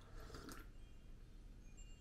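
Near silence, with a faint sip from a mug about half a second in.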